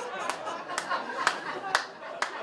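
Comedy club audience laughing, with four sharp single claps spaced about half a second apart.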